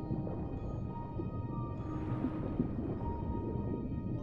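Muffled underwater ambience, a dense low rumble of deep water, with a music box lullaby playing over it. Its plucked metal notes ring on and overlap, and a fresh note strikes about half a second in and again near two seconds in.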